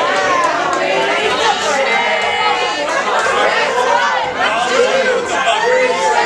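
Crowd of many people talking over one another, a dense, loud babble of voices.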